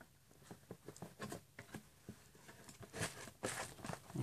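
Faint, scattered taps and rustles of a cardboard knife box being handled as a cardboard insert is pressed into place, with a slightly louder scrape about three seconds in.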